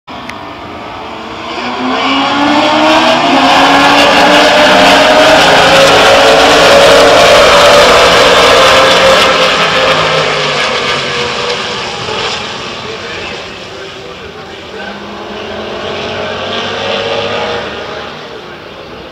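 Race vehicle engine at high revs passing by on the circuit. It swells up over the first few seconds, stays loudest for several seconds with its pitch slowly falling, then fades away, and a second, quieter pass rises near the end.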